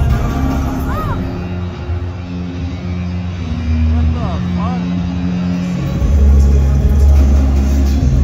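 Live hip-hop music played loud through an arena sound system, with deep bass and vocals over it. The heavy bass comes back in strongly about six seconds in.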